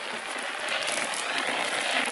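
Burning grass and brush giving a steady hissing, crackling noise that swells slightly.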